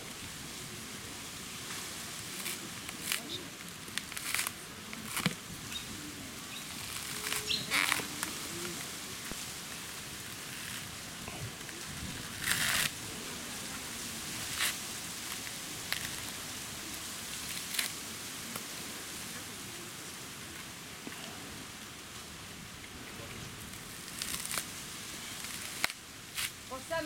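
Coconut husk being torn off on a pointed stake, heard as irregular sharp cracks and ripping, sometimes two or three close together, over a steady hiss.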